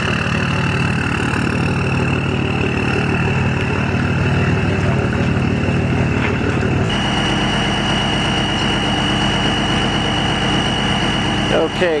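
Cummins diesel pickup engine idling steadily. The sound shifts abruptly about seven seconds in, leaving a steady high whine more prominent over the idle.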